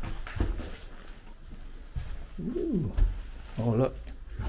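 Footsteps on a rubble-strewn floor, a few irregular low knocks and scuffs, with a short rising-then-falling vocal sound about two and a half seconds in.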